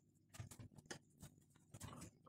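Near silence broken by faint, scattered light clicks and taps, a few each second.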